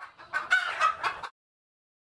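A domestic chicken calling: a quick run of bending calls lasting a little over a second that cuts off suddenly.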